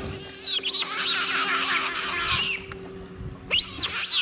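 Giant otters calling: a run of high-pitched squealing calls that rise and fall, a short pause about three seconds in, then more calls near the end.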